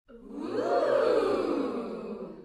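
Intro sound effect: a swelling whoosh with echo that builds over the first second and then fades out.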